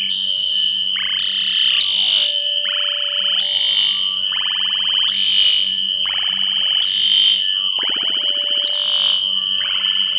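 Experimental electronic noise music: a steady high tone is held throughout over a faint low drone. A synthesizer sweep rising in pitch repeats about every one and a half seconds.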